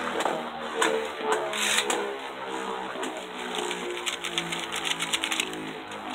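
A Beyblade Burst top (Ace Ashura on a Variable Dash driver) spinning in a plastic stadium after a launch: a steady whirring hum with scattered light clicks, and a quick patter of ticks between about four and five seconds in.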